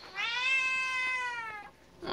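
Orange tabby cat giving one long meow that rises a little and then falls away, asking for the door to be opened.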